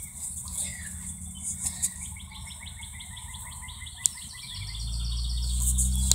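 A bird chirping in a rapid, even series of short high chirps, about six a second, for a couple of seconds. A low steady hum rises in the last second and a half.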